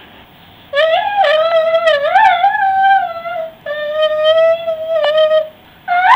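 A toddler's high-pitched wordless vocalizing, long wavering sing-song calls in two stretches, heard through a baby monitor's small speaker.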